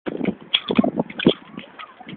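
A quick, irregular series of sharp knocks and clatters, densest in the first second and a half, then fading.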